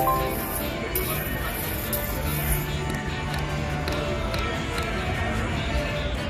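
Mo' Mummy video slot machine playing its electronic game music through a spin, over the general din of a casino floor.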